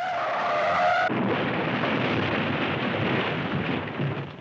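Car crash: a steady squeal for about a second, then a sudden switch to a loud rumbling noise as the car skids and rolls over on dirt.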